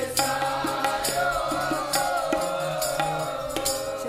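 Sikh kirtan: a woman singing a shabad over held harmonium chords, with tabla strokes keeping the beat.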